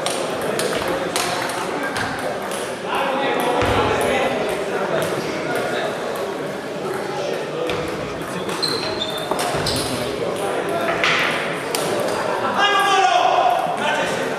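Table tennis balls clicking off paddles and tables in a rapid, irregular patter from several matches played at once in a sports hall, with people talking in the background.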